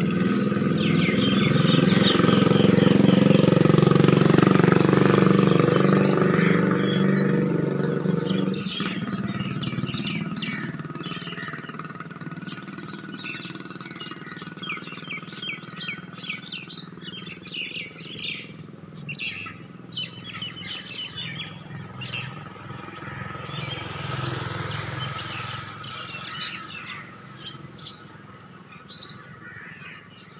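A motor engine runs steadily for the first several seconds and then cuts off suddenly, after which many small birds chirp in short, rapid calls.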